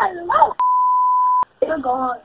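A single steady electronic beep at one pitch, just under a second long, cutting in and out abruptly between bits of speech on a recorded phone call, as used to censor a word in a released 911 recording.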